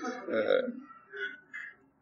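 A brief, low, non-word vocal sound, then two fainter short sounds in a pause between sentences.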